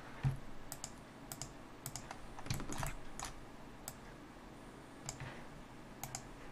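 Computer keyboard keystrokes and mouse-button clicks: about a dozen short, irregular clicks, bunched in the first three seconds and thinning out after.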